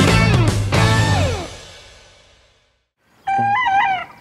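Rock intro music with guitar ends on a chord that fades out by about halfway through. Near the end a young rooster crows, a short wavering call.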